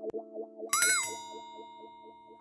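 Hip-hop beat intro: a repeating keyboard-like synth figure fading down, then a single bright synth note about two thirds of a second in that bends up and drops in pitch, a boing-like effect, and holds as a fading tone.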